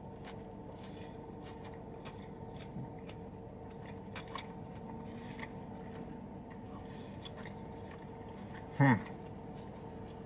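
A person chewing a mouthful of a chicken tender and coleslaw wrap, with faint wet mouth clicks over a steady low hum in a car cabin. Near the end comes one short, louder hum from the eater.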